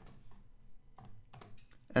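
Typing on a computer keyboard: a handful of separate keystrokes at an irregular pace.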